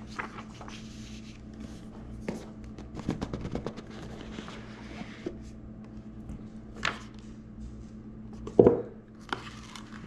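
Cardboard packaging being handled: a rigid box's lid lifted off and the box shifted on a towel, with rustling, a run of small clicks and taps, and a louder knock about eight and a half seconds in.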